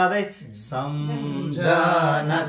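A man singing unaccompanied, holding long drawn-out notes, with a brief pause about half a second in.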